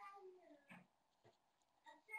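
Near silence, with a very faint pitched sound that falls in pitch just after the start.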